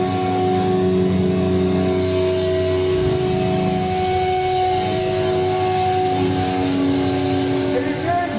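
Live, heavily distorted electric guitars and bass holding a loud, sustained droning chord with steady ringing tones, with no clear drum hits.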